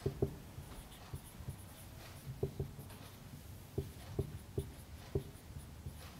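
Marker pen writing on a whiteboard: a quiet, irregular string of short taps and strokes as letters are written.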